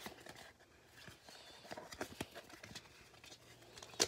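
Faint, scattered clicks and light rustling of Pokémon trading cards being handled and shuffled through by hand.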